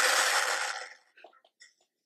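An explosion: a sudden loud blast of noise that dies away over about a second.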